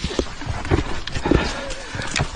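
A man's hard, grunting breaths, about two a second, mixed with scuffs and knocks of hands and feet on rock as he scrambles over a rocky ridge.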